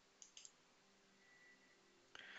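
Near silence, with a couple of faint computer mouse clicks a quarter to half a second in.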